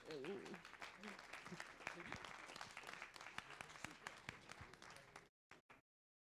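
Faint audience applause from a small crowd, a dense patter of hand claps that dies away about five seconds in.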